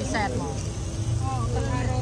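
People talking at the table over a steady low background hum.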